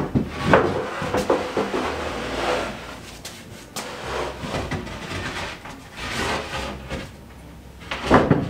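A wooden board scraping and knocking against the closet's wooden frame and shelves as it is worked into place: a string of knocks and scrapes, loudest in the first second and easing off near the end.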